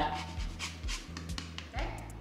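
A few faint raspy strokes of a lemon being zested on a hand grater, over a steady low hum.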